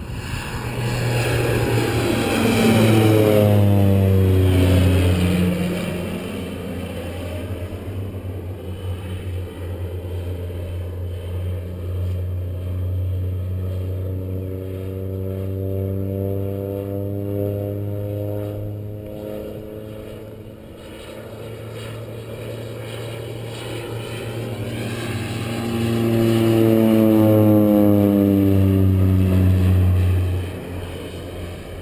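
Crop-duster airplane's propeller engine flying low overhead: a loud drone that drops in pitch as the plane passes over a few seconds in, then a steadier, quieter drone as it moves off, then growing loud again and falling in pitch on a second low pass near the end.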